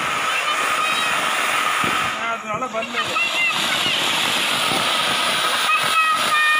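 Flower-pot ground fountain firework (anar) spraying sparks with a steady, dense hiss. Children's voices call out over it about halfway through and again near the end.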